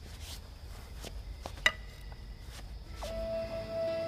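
Quiet low background rumble with a few faint clicks and one sharp click about a second and a half in; about three seconds in, soft background music begins with a long held note.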